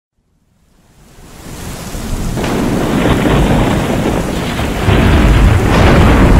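Thunderstorm sound effect: steady heavy rain that fades in from silence over the first two seconds or so, with thunder rumbling in and swelling loudly about five seconds in.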